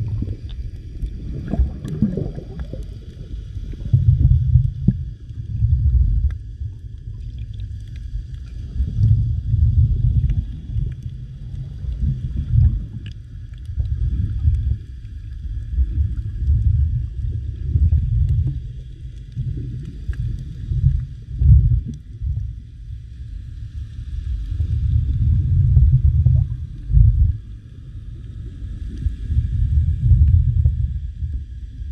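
Muffled underwater sound picked up by a submerged camera: a low water rumble that surges every two to three seconds as the camera moves through the water, with faint steady high tones over it.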